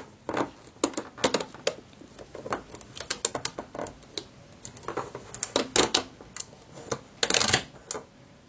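Rubber bands clicking and snapping off the pegs of a plastic bracelet loom as the finished band is pulled free: a run of irregular sharp clicks, with a longer rustling burst near the end.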